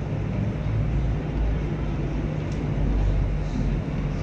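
Steady low rumble with an even hiss: background noise of a large hall picked up by the camera microphone, with no voices.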